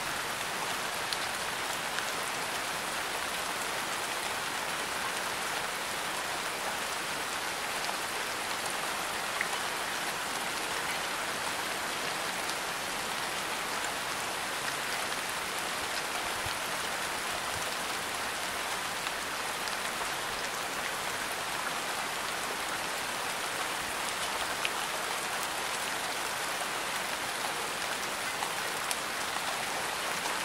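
Steady rain falling, an even hiss with a few faint drop ticks scattered through it.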